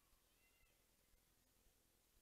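Near silence: room tone, with a very faint, short, arched high-pitched sound about half a second in.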